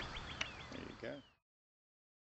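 Faint bird calling: a quick run of short high notes with a couple of falling whistles, cut off abruptly about a second and a half in.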